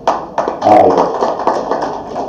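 A sharp tap right at the start and another about half a second later, followed by a man's low voiced sounds without clear words.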